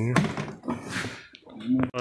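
Men's voices talking, with a few brief clicks and taps from a hand working at the plastic bumper and its wiring connectors.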